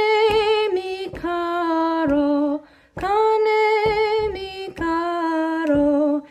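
A woman singing two short phrases of a Spanish-language folk song in held notes, each phrase stepping down in pitch, with a brief pause between them about halfway through.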